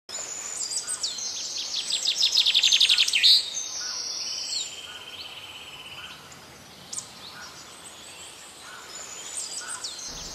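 Birds chirping and calling: rapid high trills, loudest about two to three seconds in, then a steady buzzy trill, fading to fainter scattered calls.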